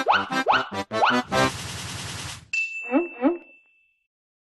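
Cartoon-style sound effects from a video intro jingle: three quick rising 'boing' sweeps, then a hiss about a second and a half in, then a bell-like ding that holds one high note under two short rising chirps and fades out near the end.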